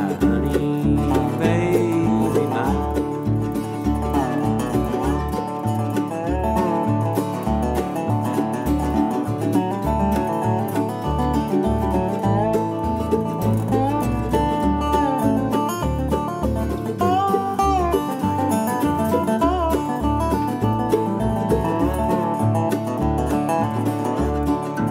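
Bluegrass string band playing an instrumental break between sung verses: plucked strings carry the melody over a steady, regular bass line.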